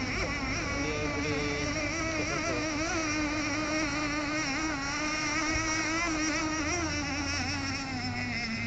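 3.5 cc nitro engine of a radio-controlled boat running at speed, a buzzing whine whose pitch wavers up and down.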